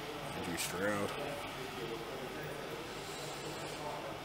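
Indistinct voices murmuring in a large room, with one short voice sound about a second in.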